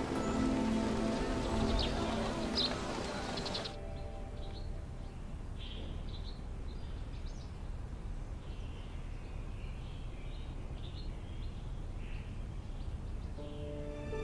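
Outdoor ambience with a steady hiss and a few bird chirps, which cuts after about four seconds to a quieter background with faint, scattered bird chirps. The last notes of soft background music fade out near the start.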